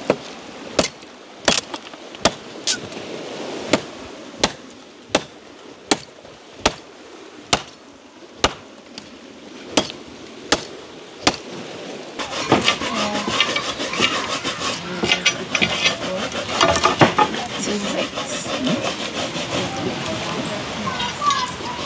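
Machete chopping a dry branch: about fifteen sharp blade strikes into the wood, irregularly spaced about half a second to a second apart. From about twelve seconds this gives way to a denser, continuous scraping and clattering.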